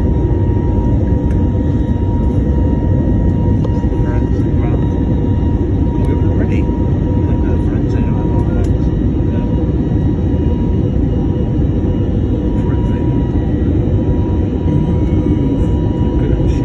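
Steady, loud cabin noise of an airliner climbing after takeoff: engine and airflow roar heard from inside the cabin, with a faint steady whine over it.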